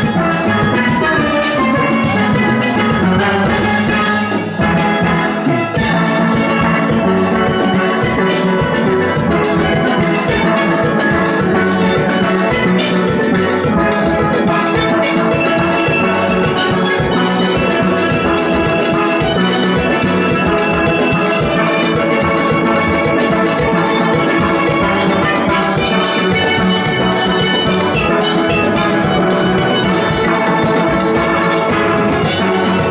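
A full steel orchestra of many steel pans played with sticks, with percussion, performing a tune live. The music runs continuously and densely, with a brief dip in level about four to five seconds in.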